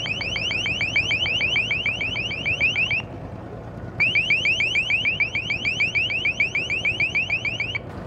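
LRAD 450XL long-range acoustic hailer sounding its warning tone, heard about 700 m away: rapid rising chirps, about eight a second, in two runs of a few seconds with a break of about a second between them.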